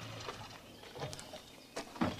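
A parked car's engine idles low and cuts off a moment in. After that come faint scattered crunches, like footsteps on a gravel forest track.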